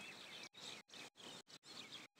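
Faint outdoor background with small bird chirps, the sound cutting out briefly several times.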